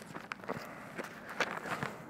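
Soft, irregular taps and rustles of hands picking up and handling a small book at a lectern, about half a dozen light knocks in two seconds.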